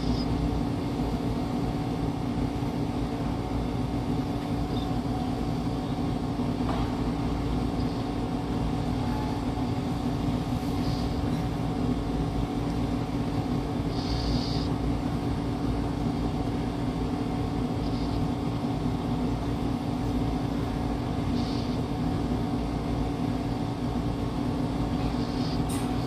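A steady low mechanical hum with a constant low rumble, with a few faint brief hisses now and then.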